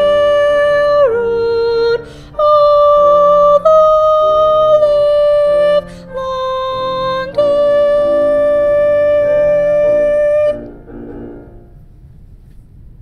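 Soprano 2 line of a choral arrangement singing long, steady held notes over lower harmony parts, the closing phrase of a part-learning track. The music stops about ten and a half seconds in and fades out.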